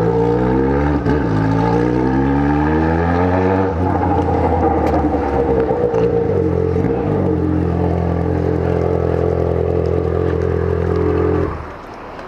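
Yamaha XJ6's inline-four engine pulling away in a low gear, revs climbing steadily for about four seconds. After a gear change it runs at steady low revs, then goes quiet about half a second before the end.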